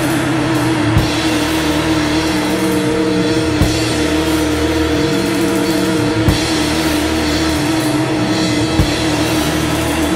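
Instrumental post-rock band playing: a dense, sustained wall of sound holding one note, with bass notes shifting every second or two and a heavy drum hit about every two and a half seconds.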